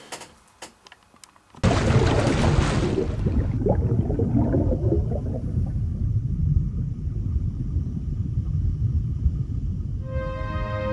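Underwater-splash sound effect: after a moment of quiet, a sudden splash hits about one and a half seconds in. Its hiss dies away within two seconds, leaving a steady low rumble of churning bubbles.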